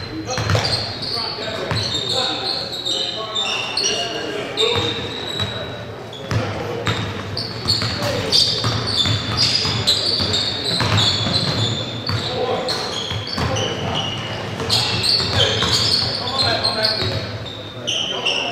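Basketball bouncing on a hardwood gym floor, with many short, high sneaker squeaks from players cutting and defending, echoing in a large gym.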